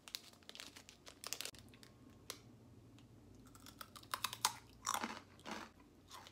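A person biting into and chewing a crisp, sauce-flavoured Japanese cracker snack: close, irregular crunches, loudest about four to five seconds in.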